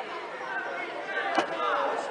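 Background chatter of several people talking at once, with no single voice clear.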